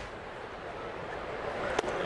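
Steady ballpark crowd murmur, with one sharp pop near the end as a 77 mph pitch smacks into the catcher's mitt on a swing-and-miss strikeout.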